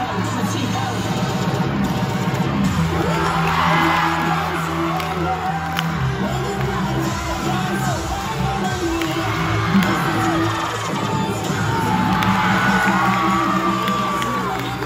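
Cheer routine music mix playing, with a crowd of cheerleaders screaming and cheering over it; the screams swell about four seconds in and again near the end.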